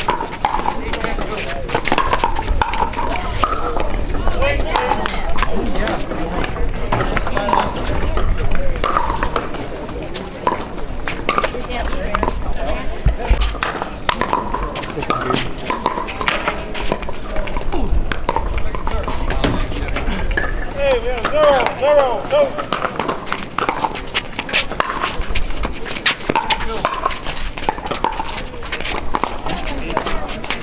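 Pickleball paddles hitting a plastic ball during rallies: sharp, hollow pops, with the ball bouncing on the hard court. Behind them is a steady murmur of voices from players and spectators on the surrounding courts.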